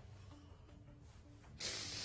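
Quiet pause with a faint low hum, then a short breathy hiss about one and a half seconds in, lasting under a second.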